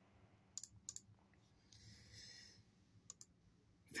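Near silence, broken by a few faint clicks, twice in the first second and once around three seconds, and a brief soft hiss around the middle.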